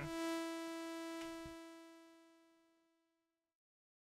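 A single synthesizer note from the AudioRealism reDominator soft synth, a steady pitched tone rich in overtones, held for about a second and then fading out smoothly over about two seconds as the envelope's release stage (T4) plays once the key is let go.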